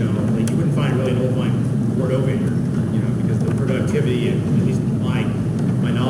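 A man in the audience speaking, asking a question or making a comment, over a steady low hum.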